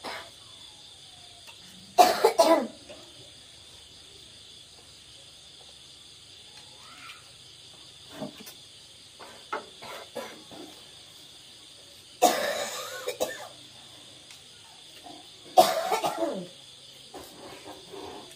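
A person coughing in three loud bouts: about two seconds in, around twelve seconds in and around fifteen and a half seconds in. Faint clinks of spoons on dishes come between the coughs, over a steady high-pitched insect drone.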